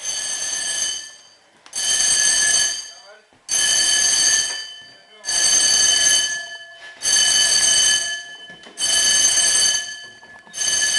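Fire alarm sounding in loud, even, pulsed blasts, about one-second tones repeating roughly every 1.8 s, six in all; a false alarm set off by smoke from cooking.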